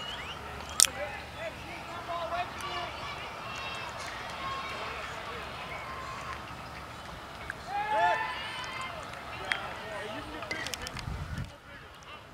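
Youth baseball game sound: scattered voices of players and spectators calling out across the field, with a single sharp crack about a second in and a loud rising shout around eight seconds in.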